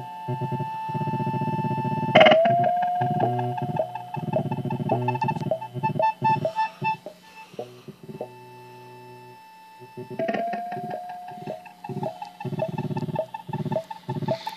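Ciat-Lonbarde Plumbutter analog synthesizer playing a rhythmic feedback patch: pitched drone tones chopped into stuttering, irregular pulses. A sharp click with a short pitch swoop comes about two seconds in. The sound thins to a quieter steady tone around eight seconds before the pulses return near ten seconds.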